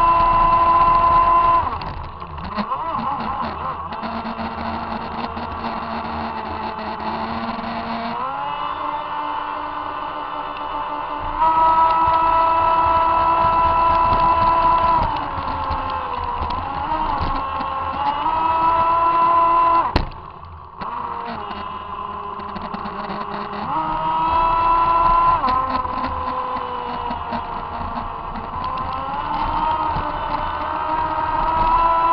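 Radio-controlled Revolt 30 speedboat's electric motor whining, heard from on board over water hiss, its pitch stepping up and down with the throttle several times. About two-thirds of the way through there is a sharp click and the whine briefly drops off before it picks up again.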